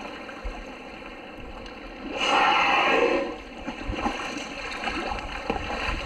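A humpback whale surfacing close by and blowing: a loud whoosh of breath lasting about a second, starting about two seconds in. Around it, sea water laps and splashes against the kayak.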